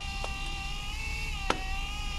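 Benchtop automation trainer with pneumatic cylinders and a conveyor running: a steady buzzing machine whine, dipping slightly in pitch just past the middle, with a faint click early on and a sharp mechanical click about a second and a half in.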